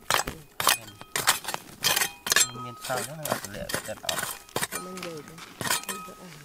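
Steel hand trowel digging in dry, stony soil: a quick series of sharp clinks and scrapes as the blade strikes and drags over rocks, a few hits leaving a brief metallic ring.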